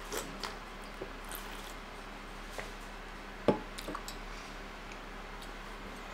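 Soft eating and handling noises over quiet room tone with a low electrical hum: a few small clicks early on and one sharper tap about three and a half seconds in, like a mug or dish touching the table.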